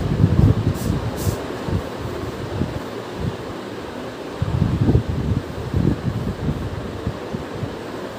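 A cloth duster rubbing across a whiteboard as it is wiped clean, in uneven strokes. Under it runs a steady fan-like whir, with low rumbling gusts that come and go.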